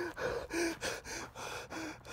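A man's rapid panicked gasping, about three short breaths a second, several with a brief voiced catch.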